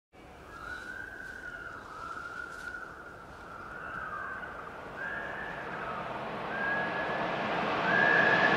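A high tone wavering up and down in slow arcs, about one a second, then held steadier, over a hiss that grows steadily louder.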